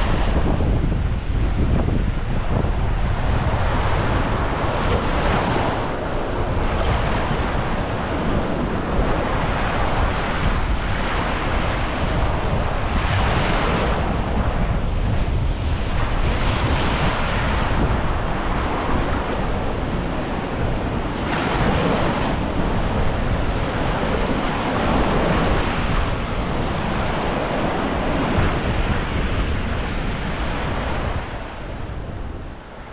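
Sea surf washing onto a beach, swelling and falling every few seconds, with strong wind buffeting the microphone.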